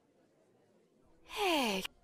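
Near silence, then about a second and a half in a short, breathy vocal sound sliding downward in pitch, like a sigh: a cartoon character's voice played backwards.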